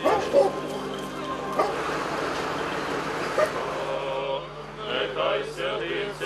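Street ambience with a few sudden loud sounds, the loudest about a third of a second in. Near the end, a group of priests' voices begins a chant.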